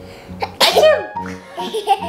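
A small child sneezes once, about half a second in, over background music.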